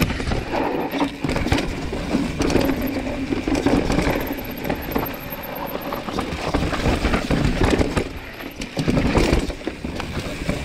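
Commencal Meta mountain bike ridden fast over rock and dirt: a continuous rush of tyre and trail noise with frequent knocks and rattles as the bike hits rocks.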